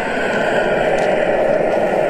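Steady rushing of a gas burner flame under a wok of soup at a rolling boil.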